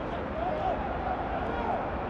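Faint, distant voices calling out twice, with a low, steady background hiss and hum of broadcast pitch ambience.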